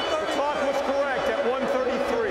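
Indistinct talking by a man's voice, which the speech recogniser did not transcribe.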